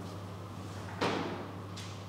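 A single sharp knock about a second in, dying away quickly, followed by a fainter click near the end, over a steady low electrical hum.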